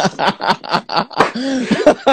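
Men laughing heartily over a phone video call: a quick run of short laughs, then a longer drawn-out laugh in the second half.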